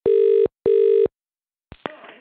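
British telephone ringing tone heard down the line: one double ring, two short steady tones with a brief gap between them. Near the end come a couple of clicks as the call is picked up.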